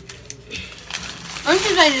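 Quiet room with low rustling and a few faint clicks, then a person's voice starts talking about one and a half seconds in.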